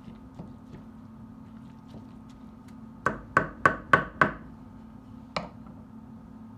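Wooden spoon knocked against the rim of a metal cooking pot: five quick sharp knocks, about three a second, then a single knock a second later, after faint clicks of the spoon stirring through the meat.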